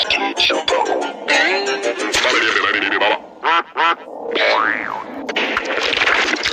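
A dense pile of overlapping edited audio clips: music and cartoon-style sound effects stacked on top of each other, full of pitch glides. It thins out briefly about halfway through, where two short warbling sounds stand out before the pile builds back up.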